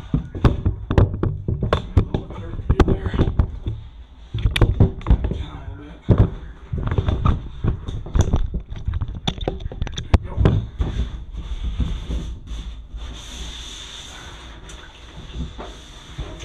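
A scouring pad with gritty borax powder being scrubbed hard across the ribbed plastic floor and wall of a large tank, in irregular rough strokes with knocks and thumps. It eases off to a quieter rubbing near the end.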